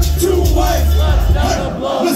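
Live hip-hop beat with heavy bass playing through a club PA, with a crowd of voices shouting along. The bass drops out near the end.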